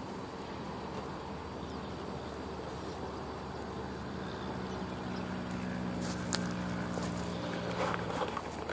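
Steady hum of a distant motor engine over outdoor background noise, growing a little louder in the second half. A single short click a little after six seconds in.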